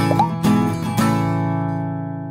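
Outro music of strummed guitar chords: three strums about half a second apart, the last chord left ringing and slowly fading.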